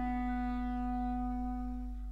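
Jazz recording: a single woodwind, a clarinet or saxophone, holds one long steady note.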